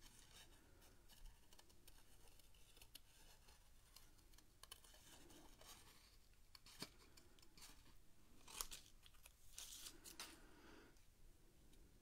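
Near silence: room tone with a few faint clicks and short rustles of paper and craft tools being handled, the sharpest click about seven seconds in and another near nine seconds.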